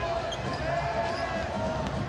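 A basketball being dribbled on a hardwood court, over the steady noise of an arena crowd.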